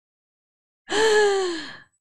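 A woman's voiced sigh, starting about a second in and lasting about a second, falling in pitch.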